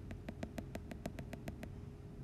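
A quick run of about a dozen small, evenly spaced clicks, some six or seven a second, that stops shortly before the end, over a faint steady hum.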